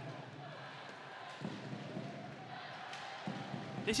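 Ice hockey arena during live play: a steady crowd murmur with a few sharp knocks of sticks and puck on the ice and boards.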